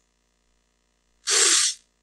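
After about a second of dead silence, a man takes one short, sharp breath, a breathy rush lasting about half a second.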